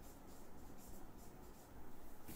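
Faint, quick scratching strokes of hand-writing or drawing on a writing surface, in a small room.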